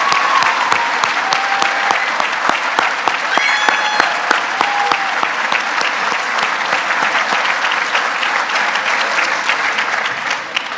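Large audience applauding steadily, with a few cheers and whistles in the first half.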